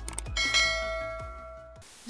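Notification-bell 'ding' sound effect of a subscribe animation, struck about a third of a second in and ringing on as it fades over about a second and a half, over a low rumble.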